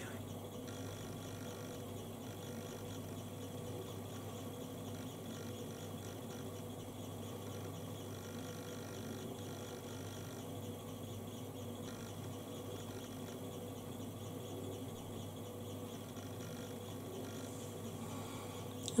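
Faint, steady electrical hum and hiss of room tone, level and unchanging throughout, with no distinct strokes or clicks standing out.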